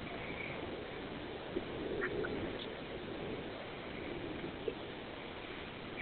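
Steady hiss and background noise of a recorded telephone call with no one speaking, with a few faint short sounds from the caller's end.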